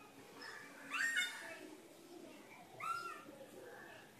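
Two short high calls from an animal in the background: one about a second in, and one near three seconds that rises and falls.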